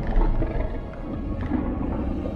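A low, drawn-out creature call made for a CGI Liopleurodon, a large Jurassic marine reptile, heard over soft background music.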